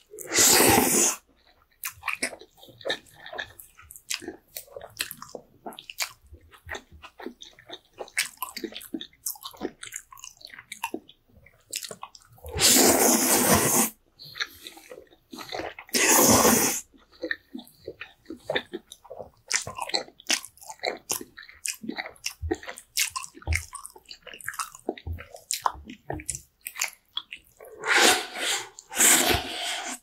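Close-miked slurping of noodles: four loud, airy slurps of about a second each (near the start, twice in the middle, and again near the end), with soft wet chewing and mouth clicks between them.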